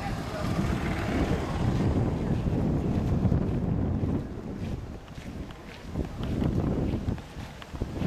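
Wind buffeting the camera microphone in gusts, a rumbling noise heaviest in the first half that eases and returns in bursts, with faint voices of people underneath.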